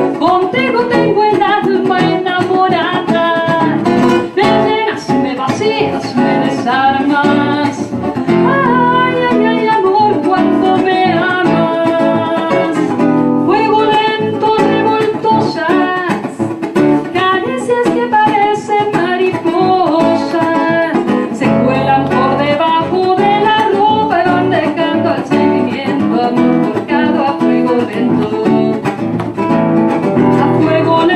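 Live acoustic guitar accompaniment, plucked and strummed, with a woman singing a slow song into a microphone.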